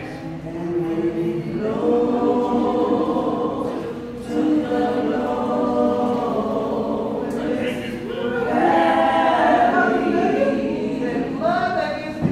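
Voices singing together a cappella in long held notes, in phrases with short breaks about four and eight seconds in.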